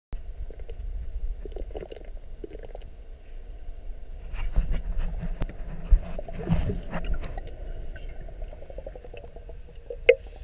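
Muffled underwater sound of water moving around a submerged GoPro: a steady low rumble with scattered sharp clicks and knocks, busier and louder in the middle.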